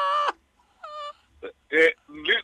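A drawn-out wail in a person's voice, held at one steady pitch, ends about a third of a second in. A shorter, quieter wail follows about a second in.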